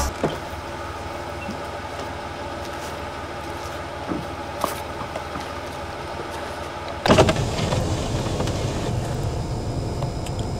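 A car engine running, coming in suddenly about seven seconds in and louder than what went before. Before it there is a quieter steady background with a few faint clicks.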